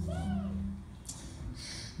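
A short, high-pitched voice-like cry that rises and falls once near the start, over a steady low hum that stops about a second in.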